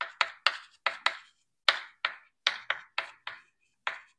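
Chalk writing on a blackboard: a quick, irregular series of about ten short, sharp taps and scratches as the chalk strikes and drags across the board.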